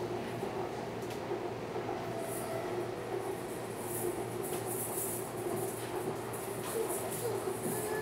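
Canada Line SkyTrain car running at speed along its track, heard from inside the car: a steady rolling rumble with a constant low hum.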